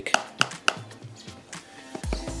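Background music, with three sharp clicks in the first second as fingers tap and handle the Parrot Disco's plastic nose canopy.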